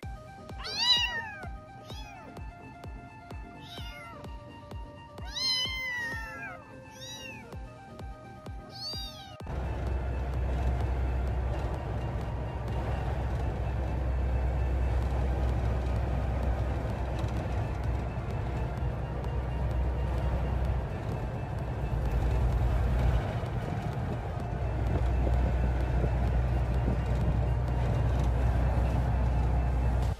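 A cat meows in a quick string of short rising-and-falling calls for about the first nine seconds. Then the sound cuts to a steady low rumble of a vehicle driving, heard from inside its cab.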